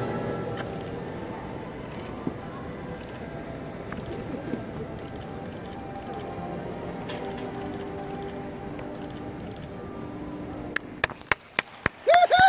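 Steady background noise of a large indoor arena, with faint music and distant voices. A few sharp clicks come near the end.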